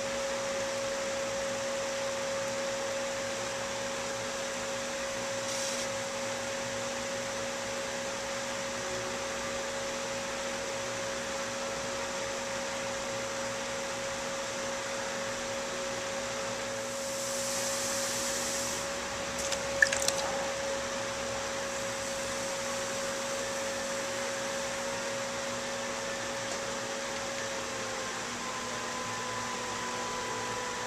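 Electric pottery wheel motor humming steadily while wet clay is thrown on it, its pitch dropping slightly near the end. A brief hiss and a couple of sharp clicks come about two-thirds of the way through.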